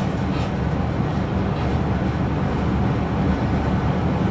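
A steady low hum with a faint even hiss above it, running without change.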